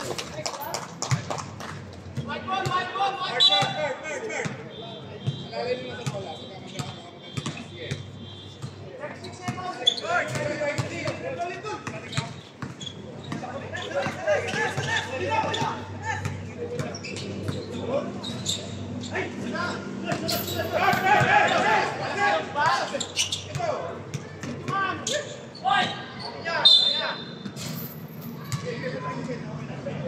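Basketball game in play: a basketball bouncing repeatedly on the hard court amid players and spectators calling out and chattering.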